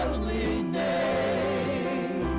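Gospel worship music: several voices singing together with wavering, sliding pitch, over long held bass notes from a band.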